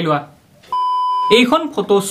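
A single steady electronic bleep, one pure tone lasting a little over half a second, set between the man's words as a censor bleep.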